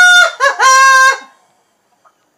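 A rooster crowing cock-a-doodle-doo, loud: a held note, a brief break, then a long final note that drops away just over a second in.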